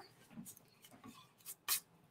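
Sheet of black cardstock being picked up and laid on a clear acrylic die-cutting plate: a few faint rustles and light taps, the sharpest a brief tick near the end.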